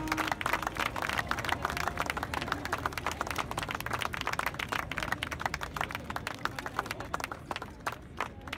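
Audience applauding: many hands clapping in a steady, dense patter.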